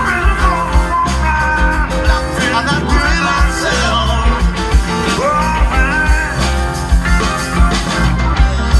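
Live rock band playing: electric guitar, bass guitar, Hammond organ and drums, with a steady drum beat.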